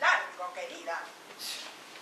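A woman's voice making short, high-pitched wordless sounds in the first second, followed by a brief hiss about a second and a half in.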